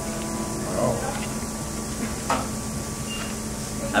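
Fast-food restaurant room tone: a steady low hum with faint voices in the background, and one light knock a little over two seconds in.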